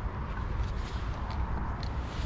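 Wind buffeting the microphone outdoors, a fluctuating low rumble, with a few faint rustles and clicks.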